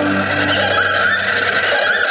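A horse whinny effect, loud and noisy, sounding within an orchestral piece about galloping war horses.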